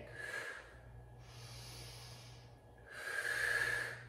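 A woman's breathing during a Pilates exercise: an audible breath out at the start, a softer breath in through the middle, and a louder breath out about three seconds in.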